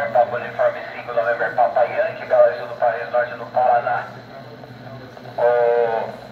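A man's voice coming over a VHF amateur radio transceiver's loudspeaker, narrow and tinny, for about four seconds. A short steady tone follows near the end.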